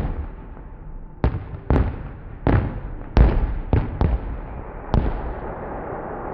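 Aerial fireworks bursting overhead: about eight sharp bangs at uneven intervals, each trailing off in a short rolling echo. The bangs stop near the end.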